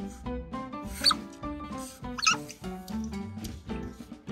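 Asian small-clawed otter giving short, high-pitched squeaks: one about a second in and a quick cluster of three or four a little after two seconds, over background music.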